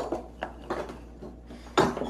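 Steel ladle clinking against a stainless steel pot of stew: a few sharp metallic knocks with short ringing, the loudest near the end.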